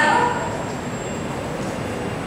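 A voice through a microphone breaks off just after the start, followed by a steady, even background noise of the room with no rhythm or pitch.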